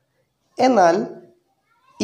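A man's voice: a single drawn-out spoken syllable about half a second in, its pitch bending up and down.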